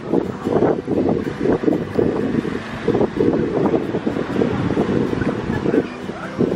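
Wind buffeting the microphone in uneven gusts, a loud low rush.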